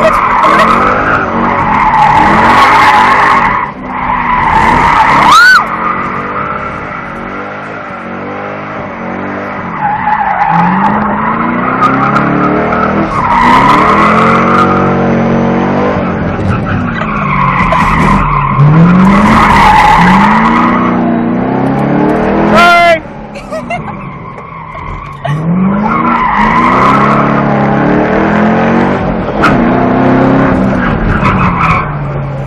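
Race car engine heard from inside the cabin, revving up and dropping back again and again as it accelerates and brakes through an autocross course. BFGoodrich g-Force COMP-2 A/S tires squeal through the corners in repeated stretches.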